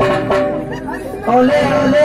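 A voice over the stage's PA loudspeakers, with music under it. The loud band music drops away at the very start, and the voice comes in louder about halfway through.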